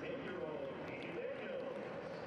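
Faint ballpark crowd ambience: a low, even murmur with indistinct voices.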